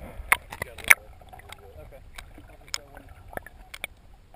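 Muffled sound from a camera held underwater: a series of sharp clicks and knocks, the loudest three in the first second, then lighter ones every half second or so, over a low water rumble.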